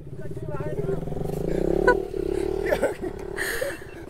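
A motorcycle engine running, its pitch rising a little and then easing off.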